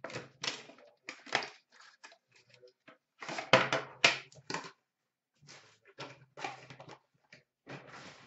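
Card packaging being handled: irregular rustles, scrapes and knocks as an Upper Deck Premier metal tin comes out of its cardboard box. The loudest knocks come about three and a half to four seconds in, as the tin is set down in a plastic bin.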